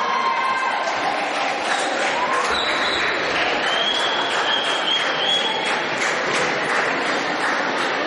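Audience applauding: many hands clapping steadily, with a few voices heard over it.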